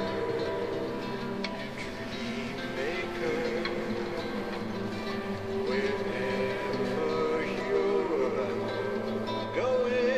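Nylon-string classical guitar playing a slow tune, its plucked notes under a melody line of held notes that bend in pitch.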